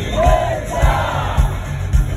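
Live rock band playing at a stadium concert, heard from inside the audience, with a thudding beat and the crowd singing along loudly.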